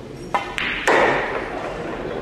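A pool shot: the cue tip strikes the cue ball, then sharp clicks of pool balls colliding, the loudest crack coming about a second in with a short ringing tail.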